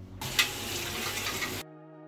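Water running from a tap into a stainless steel sink, with one sharp knock shortly after it starts, cutting off suddenly about a second and a half in. Soft background music continues underneath and alone after the cut.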